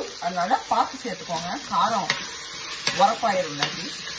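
Wooden spoon stirring vegetables in a sizzling steel cooking pot, with a few sharp knocks of the spoon against the pot. A voice talks over it.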